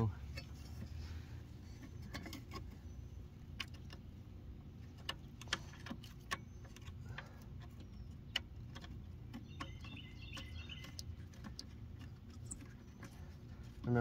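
Scattered small metallic clicks and taps of bolts being handled and threaded by hand into a riding mower's steel belt-guard mounting bracket, over a low steady hum.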